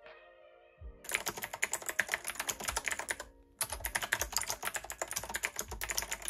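Typing on a Rymek retro typewriter-style mechanical keyboard with clicky blue switches: a dense run of key clicks starting about a second in, with a brief pause just past the middle before the clicking resumes.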